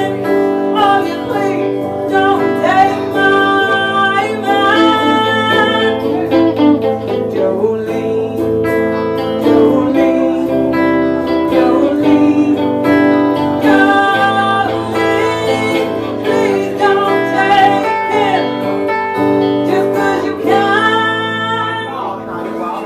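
Live song: a woman singing with her own guitar, accompanied by a second player on a red SG-style electric instrument.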